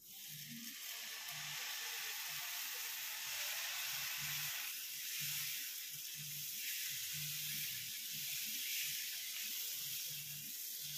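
Dosa batter sizzling on a hot griddle as it is ladled on and spread out in a spiral; the hiss starts suddenly as the batter first hits the pan and keeps on steadily, easing a little about halfway through.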